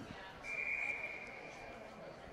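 Ice hockey official's whistle: one long blast starting about half a second in, a single steady high tone that fades out, blown to stop a faceoff for a false start. It sounds over faint arena chatter.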